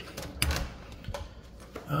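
A door's knob turned and its latch clicking as the door is pulled open: a sharp click with a low thump about half a second in, then a fainter click.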